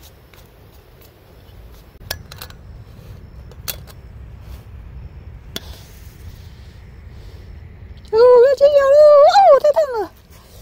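A few light clicks and taps from a stainless-steel lunchbox lid being handled. Near the end comes a loud, high, wavering voice-like call lasting about two seconds.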